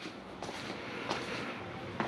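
A few soft footsteps on a concrete floor at walking pace, faint over a steady background hiss.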